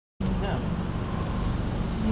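Mazda MX-5's engine idling steadily, with a faint voice in the background.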